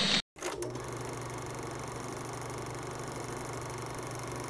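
A short loud burst of sound cuts off just after the start; then, about half a second in, a steady low hum with a fast, even mechanical rattle and hiss sets in and holds.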